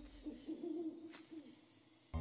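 Faint owl hooting: a low, steady call that fades away about a second and a half in.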